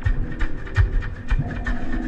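Dub-leaning electronic music: deep, irregularly spaced low thumps with scattered crackly clicks over faint sustained tones.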